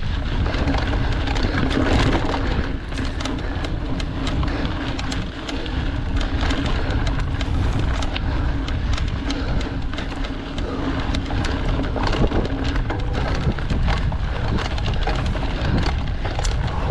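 Mountain bike ridden over a dirt forest trail: a steady rumble of tyres on the ground with many small clicks and knocks as the bike rattles over bumps.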